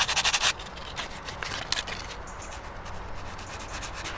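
Sandpaper rubbed by hand over a hardened Milliput epoxy putty patch on a cast iron hopper, giving it a light sand. It opens with a quick run of rapid scratchy back-and-forth strokes in the first half second, then settles into softer, slower rubbing.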